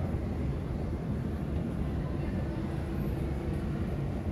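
Steady low rumble of airport terminal interior ambience, with no distinct events.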